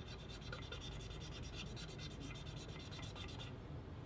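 Cotton-tipped applicator scrubbing a stainless steel surface wet with neutralizer: faint rubbing that stops shortly before the end. This is the neutralizing step, bringing the surface pH back up after the phosphoric-acid conditioner, ready for bonding a strain gauge.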